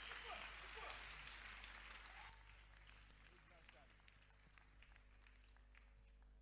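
Near silence: faint room noise with faint voices, fading to near silence after about two seconds.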